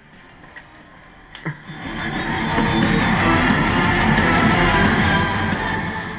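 An instrumental rock band mix with electric guitars, without vocals, played back over studio monitor speakers. It is quiet for about the first second and a half, then rises in and plays loud before easing off near the end.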